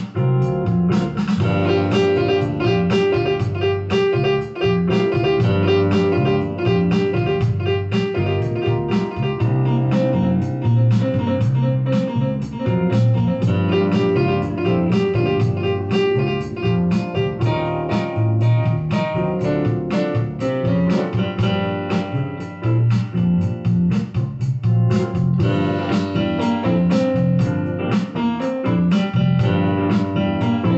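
Electronic keyboard improvising over a backing track played from a tablet, with a steady beat and a bass line running under the keys.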